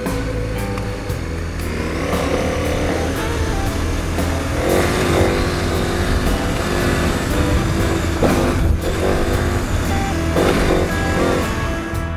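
KTM 1090 Adventure motorcycle's V-twin engine running and revving up and down while riding a dirt trail, mixed with guitar background music.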